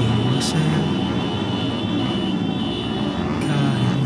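Motorcycle engines running, mixed with the voices of people talking.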